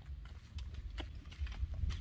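Footsteps on a hard dirt path: a few sharp, irregular clicks, about one a second, over a low rumble.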